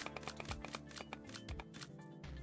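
Online slot game's background music, with a rapid run of clicks, about six a second, as the bet is stepped up button by button.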